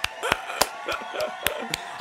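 One person's hand claps, about seven sharp claps at roughly three a second.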